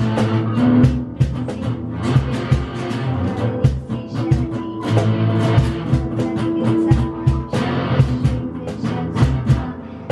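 Electric guitar and drums playing the sea shanty's accompaniment with a steady beat and no vocals: a sing-along gap where the vocal line is left for the listener.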